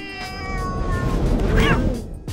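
A cat yowling: one long cry that sinks slightly in pitch, then a shorter rising-and-falling cry about a second and a half in.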